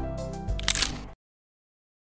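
Closing music with a low, steady pulse, broken by a short, sharp burst of noise about two-thirds of a second in. All sound then cuts off abruptly a little over a second in.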